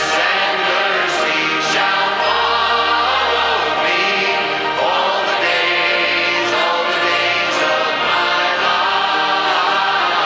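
Church congregation singing a hymn together, with one man's voice leading over a microphone and sustained low accompaniment notes underneath. The singing is continuous and at a steady, full level.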